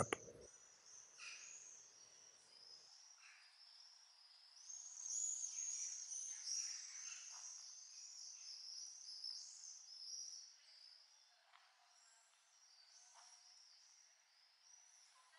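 Faint high-pitched songbird warbling from about five seconds in, lasting some six seconds, with a few soft clicks around it.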